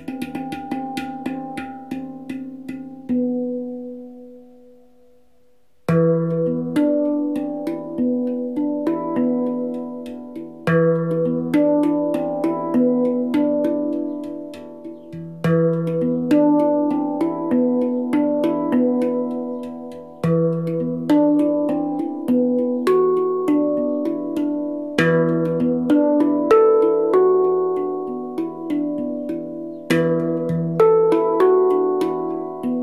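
Steel handpan played with the hands in a free improvisation: ringing notes struck in flowing rhythmic runs, with a deep low note returning every few seconds. A few seconds in, the notes die away almost to nothing before the playing resumes with a strong low note.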